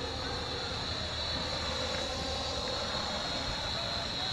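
Parrot AR.Drone quadcopter's four electric motors and propellers running in flight, a steady high-pitched whine.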